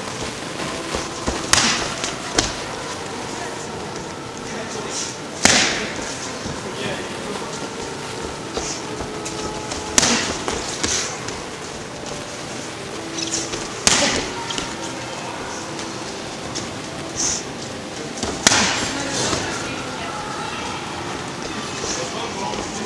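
Boxing gloves striking focus mitts during pad work: sharp single punches, sometimes two close together, every few seconds.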